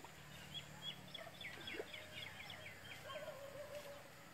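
A small bird singing: a quick run of about a dozen short, high notes, each dropping in pitch, over faint outdoor background.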